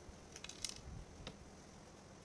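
Cutting pliers snipping through a boutonnière's flower stem to shorten it: a few quick sharp clicks about half a second in, then one more a little after a second.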